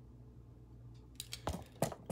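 Faint low hum, then a few short sharp clicks and knocks of handling about a second and a half in, as the hand tool and work are jostled in a mishap.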